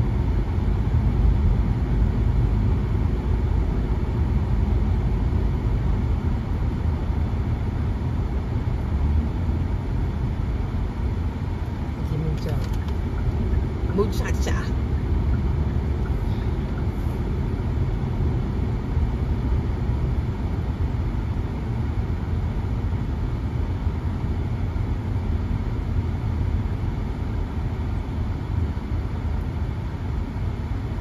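Road and engine noise inside a moving car's cabin: a steady low rumble that eases slightly toward the end as traffic slows, with a few faint brief clicks about halfway through.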